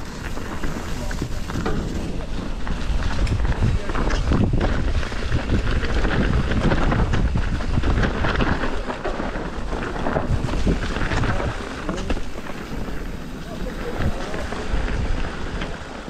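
Mountain bike ridden along a dirt woodland trail: steady tyre noise with scattered knocks and rattles from bumps, under heavy wind rumble on the camera microphone.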